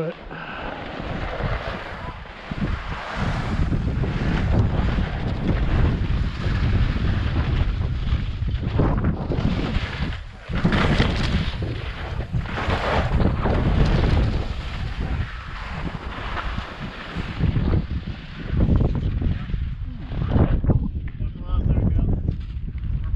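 Wind buffeting the camera microphone and skis scraping over firm, chopped-up spring snow during a fast downhill ski run, rising in several louder surges as the skier turns.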